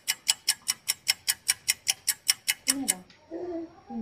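Rapid, evenly spaced ticking, about five sharp clicks a second, that stops suddenly about three seconds in. The ticks are brighter than the rest of the recording, like a ticking sound effect laid over it. A short voice sound follows near the end.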